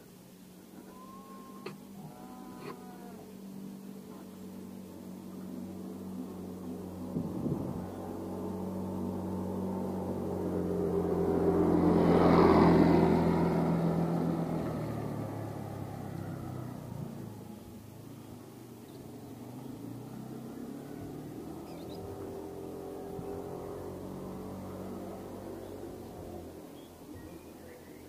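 Small motorcycle engine approaching along the road, growing louder to a peak about halfway through, then fading as it passes. A fainter engine swells and fades again later.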